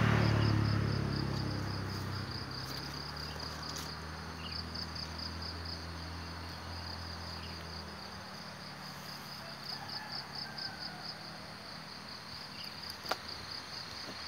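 Insects chirping in a fast, even, high-pitched pulse. A low engine hum is loudest at the start and fades out about halfway through. A single sharp click comes near the end.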